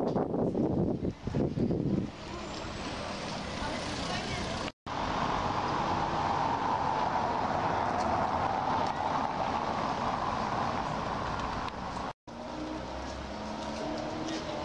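Town-square street ambience: car traffic with people's voices in the background. It is broken twice by abrupt cuts, about five and twelve seconds in.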